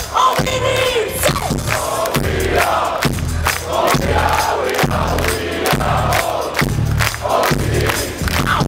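A large crowd chanting and shouting along with a live heavy metal band, with drum hits and bass under the massed voices.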